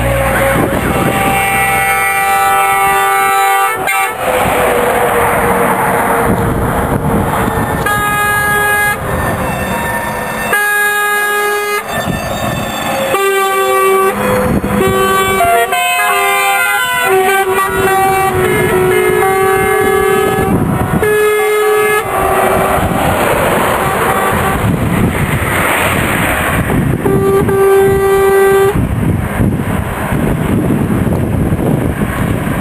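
Trucks driving past one after another and sounding their horns in repeated long blasts, some chords of several notes, over the rumble of engines and tyres.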